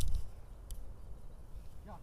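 Handling noise from a small camera being moved and set down: a dull bump at the start, then a low rumble, one short click, and a brief vocal sound near the end.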